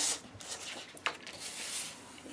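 White card stock being handled and slid across a plastic scoring board, a short papery swish at the start, a light tap about a second in, then faint scratching as the strip is set in place and scored.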